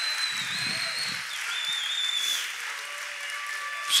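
A congregation applauding steadily in a large room.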